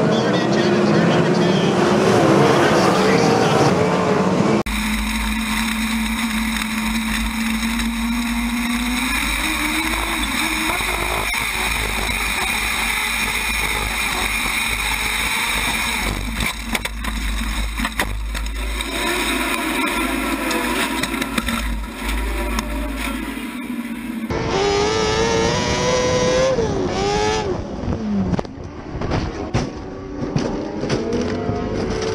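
Winged sprint car engines running at racing speed on a dirt oval, heard across several cut-together clips. The engine pitch rises and falls, most plainly from about 24 s in, where it revs up and down.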